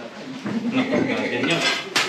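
Metal clutter clinking and rattling as a gloved hand shifts metal racks and coiled wire, with a sharper clank near the end.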